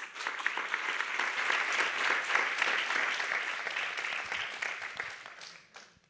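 Audience applause in a large hall. It starts at once, holds steady, then dies away over the last couple of seconds.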